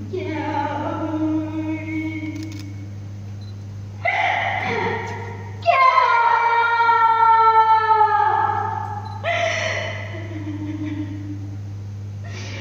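A woman singing solo in Vietnamese tuồng (classical opera) style: several long held, sliding vocal phrases with short pauses between them, the longest and loudest in the middle ending on a falling glide. A steady low hum runs underneath.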